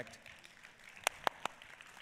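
Faint audience applause, with three sharp hand claps close by about a second in.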